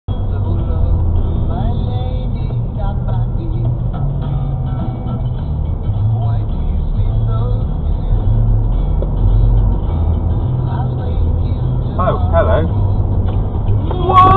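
Car interior engine and road rumble, a steady low drone while driving, with faint music and voices mixed in underneath.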